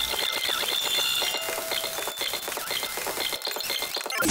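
Video-rewind sound effect: a fast, chattering whir like tape being rewound at high speed, with rapid ticking throughout.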